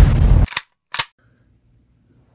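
Loud drum-heavy intro music that cuts off about half a second in, followed by two short, sharp bang-like hits, the second and cleaner one about a second in.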